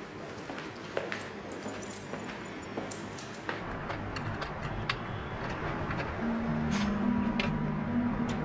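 Quiet film underscore that swells gradually, with held notes coming in after about six seconds. Over it come a few light clicks and clinks as the bank's glass entrance door is locked.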